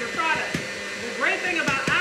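An electric stand mixer runs with a steady motor hum, while a woman talks over it.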